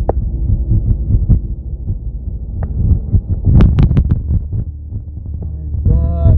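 Low, throbbing rumble inside a moving car's cabin, with a few sharp clicks a little past halfway through.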